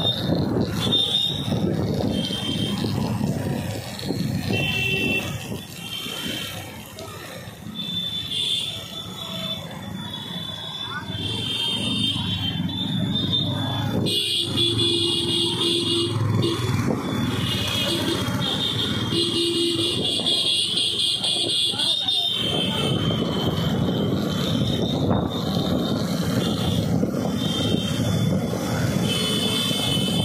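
Motorcycle engine and road rumble with wind on the microphone while riding in a group. Over it sound repeated shrill, high-pitched tones, strongest in the middle stretch, where the low rumble drops away for several seconds.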